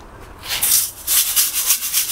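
Coarse mountain-sand (yamazuna) grains rattling and rasping in a round stainless-steel soil sieve shaken by hand, sifting the fines out of bonsai potting grit. The shaking starts about half a second in and goes in quick, even strokes, several a second.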